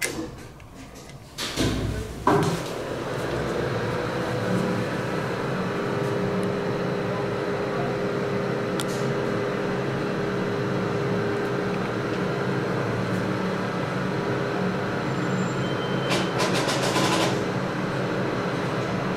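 Vintage 1967 Otis traction elevator's machinery running after a hall call: a clunk about two seconds in as it starts, then a steady hum with a held tone, and a quick run of clicks near the end.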